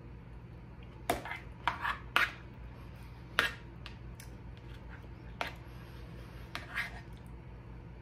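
A person chewing a mouthful of potato salad, with about seven short mouth clicks and smacks spread over several seconds against a steady low room hum.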